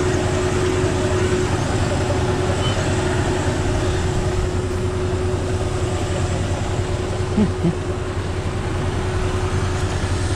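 Tractor engine running steadily with the PTO driving the Monosem planter's vacuum fan: a continuous drone with a constant whine over it. The fan draws the vacuum that holds the corn seed on the seed plates.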